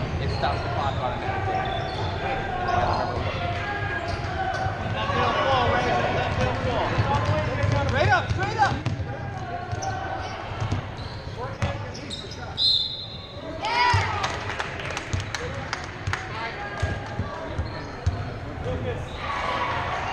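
Sounds of a youth basketball game on a hardwood gym floor: a ball dribbling, sneakers squeaking, and players and spectators calling out. A referee's whistle sounds briefly a little past the middle, stopping play.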